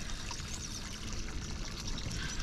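Water lapping and trickling against the hull of a small boat, a steady splashy wash.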